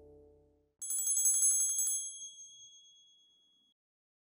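A small metal bell rung in a fast trill of about ten strokes a second for roughly a second, then left ringing and dying away. The tail of guitar music fades out just before it.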